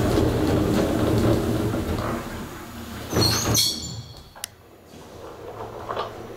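Otis elevator's stainless steel sliding doors running shut, with a steady rumble at first, a loud clunk a little past three seconds as they close, and a single sharp click about a second later.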